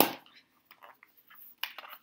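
A makeup palette case being worked open by hand: a sharp click at the start, then faint scattered clicks and rustles, with a quick run of clicks near the end.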